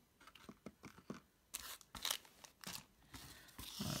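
Foil wrapper of a Pokémon Sun & Moon booster pack crinkling and rustling as it is picked up and handled, with scattered light taps of packs and items being moved on the table.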